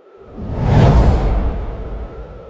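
Whoosh transition sound effect with a deep low end, swelling to its loudest about a second in and then fading away.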